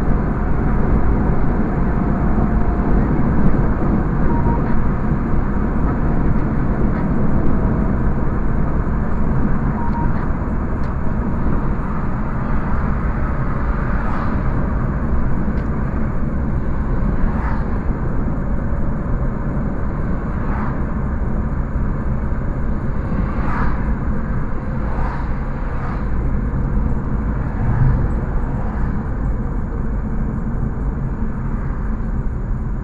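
Road noise inside a moving car's cabin: a steady low rumble of engine and tyres on asphalt, with a few faint clicks in the second half.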